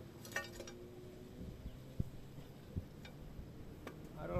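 Faint knocks of a hoe blade striking dry, stony soil, a few scattered strikes, the loudest about two seconds in. A brief high animal call sounds near the start.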